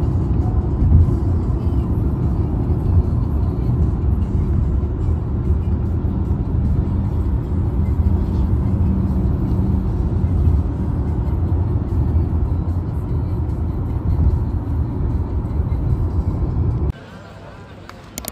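Steady low rumble of road noise from a car travelling at speed, heard from inside the cabin. It cuts off suddenly near the end.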